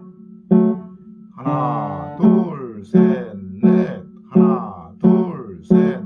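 Piano playing a left-hand D major chord (D, F-sharp, A), struck eight times at a slow, even pulse, each strike fading quickly before the next.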